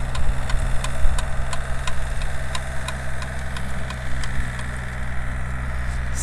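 Compact tractor engine running steadily while driving a rear-mounted rototiller through grass and soil, a low hum with a regular light ticking about four times a second.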